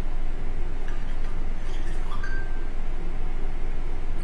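Steady low rumble of room background noise picked up by a webcam microphone, with a few faint ticks and a brief faint high tone about two seconds in.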